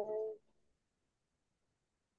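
A woman's voice speaking, breaking off about half a second in, followed by silence from the gated video-call audio.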